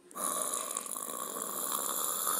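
A rocket-launch sound for a toy paper rocket lifting off: a steady rushing hiss that starts just after the opening.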